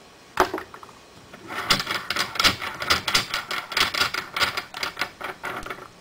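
Steel threaded die bushing being spun by hand out of the top plate of an RCBS 50 BMG reloading press, its metal threads rattling in a rapid, uneven run of clicks for about four seconds after a single click.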